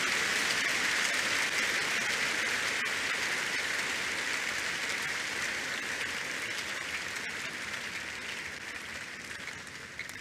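A large congregation clapping, the applause slowly dying away over the whole stretch.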